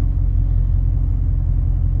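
Steady low rumble of a Jeep Grand Cherokee WJ's engine idling, heard from inside the cabin.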